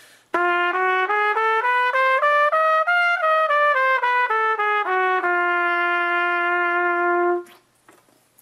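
Solo trumpet playing a diminished scale in separate tongued notes. It climbs about an octave, comes back down, and ends on a low note held for about two seconds.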